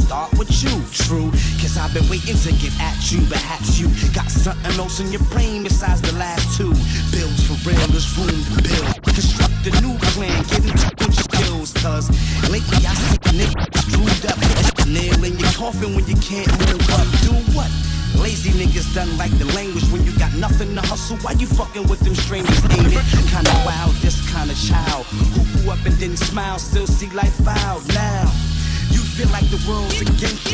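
Hip-hop track playing: a rapper's vocals over a steady beat with heavy bass.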